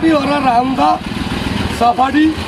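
A man talking over the low, pulsing rumble of a nearby motor vehicle's engine running.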